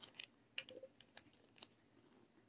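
Faint small clicks and ticks, about half a dozen scattered over two seconds, from fingers handling a small plastic kitten feeding bottle.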